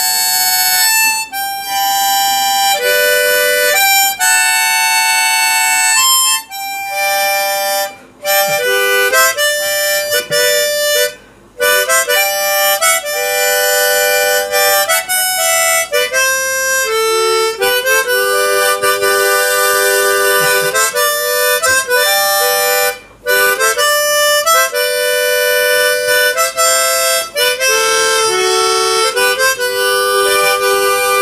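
Harmonica playing a slow melody of held notes, often with two or more notes sounding together as chords, unaccompanied. The line breaks off briefly a few times, with short pauses between phrases.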